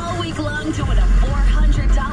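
A song with singing playing on the car radio, heard inside the cabin of a moving car over the low rumble of the drive.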